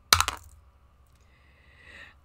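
A die rolled for a skill check, clattering on a hard surface as a quick cluster of sharp clicks in the first half second.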